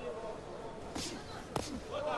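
Boxing match ambience: a low murmur of arena voices, with two sharp knocks about a second in and a little past halfway, the sound of punches landing or feet on the ring canvas.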